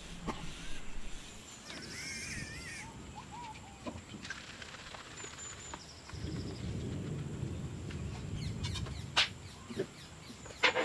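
A songbird singing a few warbling phrases in the first few seconds, with short chirps a little later. In the second half comes a low rustling handling noise with a couple of sharp clicks near the end.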